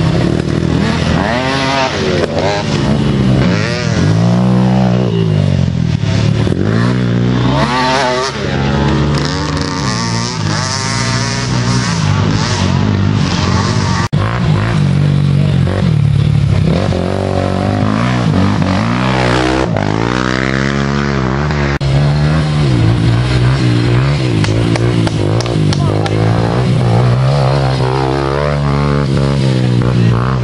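Youth quad (ATV) engines running hard on a cross-country race trail, revving up and easing off over and over as riders accelerate and pass by.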